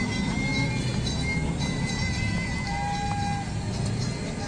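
Music playing over a steady low rumble of outdoor promenade noise, with a short steady tone about three seconds in.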